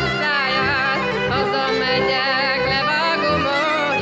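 Hungarian folk music played live: a woman singing with a wavering vibrato over two fiddles and a double bass.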